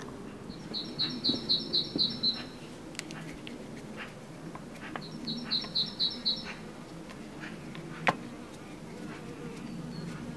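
A small bird outside gives two quick runs of about seven high chirps each, about a second in and again about five seconds in. Between them come light clicks of hands working a plastic RAM mount arm, with one sharp click about eight seconds in.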